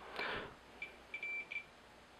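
A digital multimeter beeping as its probes are pushed into an outlet to read mains voltage: a few short high beeps at one pitch, one held a little longer, after a brief scrape of the probes going in.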